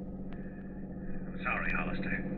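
Steady low drone of a car engine sound effect, the patrol car running at speed. About one and a half seconds in, a man's voice starts, thin as through a police radio.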